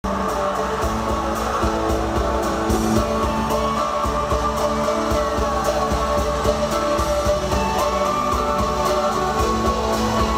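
Live pop-rock band playing an instrumental passage in an arena: drums keeping a steady beat under electric guitars, with the hall's echo around it.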